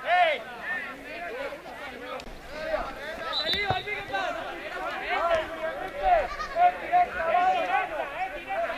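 Young footballers' voices shouting and calling to each other across the pitch, many overlapping cries, with a single thud of the ball being kicked a little before the middle.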